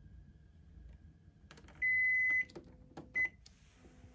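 Button presses on an air purifier's control panel: a click, then a long electronic beep, a few more clicks and a short second beep.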